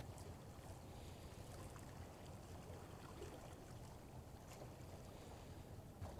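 Faint, steady seaside ambience: a low rumble with light sea water lapping among concrete tetrapods, and a few faint ticks.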